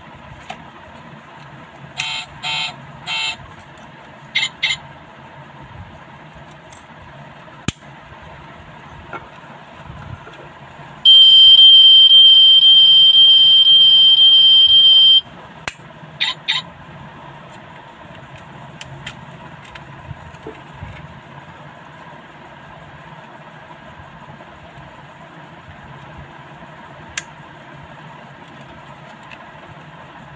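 A die-cast toy model car's built-in sound module giving a loud, steady, high electronic beep for about four seconds near the middle. A few short electronic chirps come before and after the beep, over a faint steady hum.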